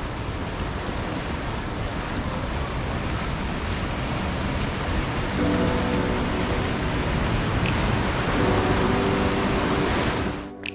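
Steady rush of sea surf breaking against a seawall. Soft background music with long held notes comes in about halfway through.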